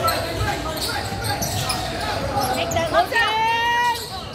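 A basketball bouncing on a hardwood gym floor during a game, over the chatter of a large hall, with a spectator shouting from about three seconds in.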